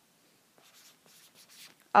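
Faint, irregular light taps and scratches of handwriting on an iPad touchscreen, starting about half a second in.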